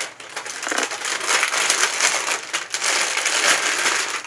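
Clear plastic wrapping crinkling and crackling as it is handled and pulled open to free a small ring box, growing louder over the first second and then steady.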